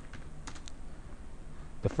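Typing on a computer keyboard: a few light key clicks over a low steady background hum as a short terminal command is typed.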